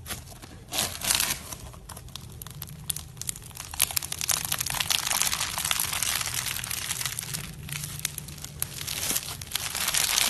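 Foam-bead slime (floam) being pressed, stretched and squeezed by hand: a dense stream of fine crackling and crunching from the polystyrene beads, busiest from about four seconds in.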